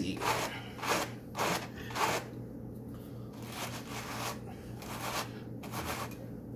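Wool being hand-carded between two wooden hand carders: the wire teeth brush through the fleece in quick scratchy strokes, about two a second, with a short pause about halfway before a few more strokes.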